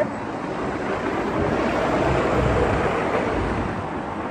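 Road traffic: a vehicle passing on the street, its noise swelling to a peak about halfway through and fading off near the end.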